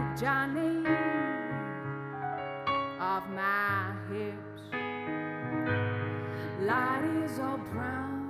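A grand piano played live, holding chords, while a woman sings long, wavering notes over it in three phrases.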